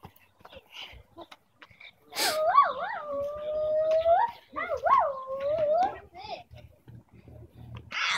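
A dog howling: two long, wavering howls of about two seconds each, the first starting about two seconds in.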